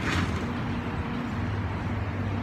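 Steady low rumble of a motor vehicle engine running, under a haze of outdoor street noise.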